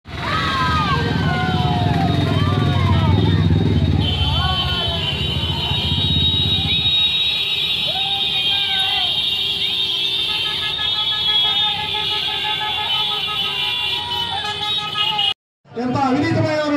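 A procession of motorcycles riding past, engines running with a heavy low rumble in the first half, men shouting, and vehicle horns honking with long held notes through the second half. The sound cuts off abruptly just before the end.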